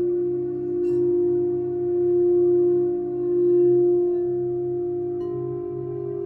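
A singing bowl rubbed around its rim gives a sustained ringing tone that swells and fades in slow waves. Its pitch steps slightly higher near the end.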